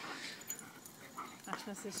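Dogs playing off leash, heard faintly, with a brief dog vocalization about a second in; a few words of a woman's voice come near the end.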